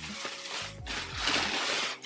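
Tissue paper rustling and crinkling as it is pulled open, loudest in the second half, over background music.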